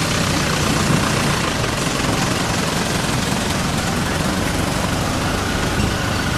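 A motor vehicle engine idling steadily under a constant hiss of outdoor noise.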